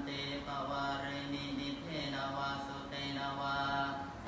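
Thai Buddhist monks chanting in Pali, a near-monotone recitation held on steady pitches in phrases that break every second or two.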